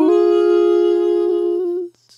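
Layered, Auto-Tuned male voices singing a cappella. They slide up into one long held note on the word 'woods' and cut off sharply shortly before the end.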